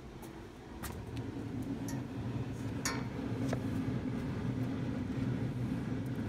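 Steady low hum of a Green Mountain Grills Daniel Boone pellet grill's fan running on the preheated grill, growing louder about a second in. A few light clicks come from the lid being lifted and the metal tray being handled.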